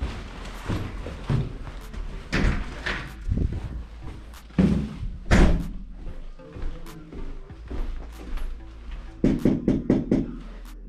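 Footsteps going up a stairwell and along a hallway, with a loud door-like thud about five seconds in, over background music. A quick run of knocks comes near the end.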